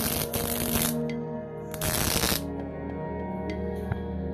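Two bursts of welding-arc crackle as joints of a steel tube frame are tack-welded: the first lasts about a second at the start, the second is shorter and comes about two seconds in.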